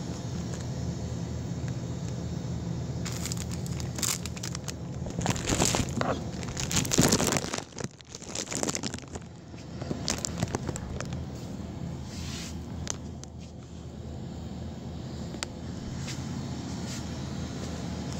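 Irregular rustling, crinkling and scraping over a steady low hum, busiest from a few seconds in until about halfway through, with a few sharp ticks later.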